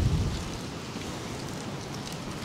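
Wind blowing across the microphone: a steady, even hiss with some low rumble.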